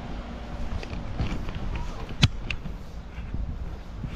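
Outdoor walking ambience: a low, uneven rumble of wind on the microphone, with a single sharp click a little over two seconds in.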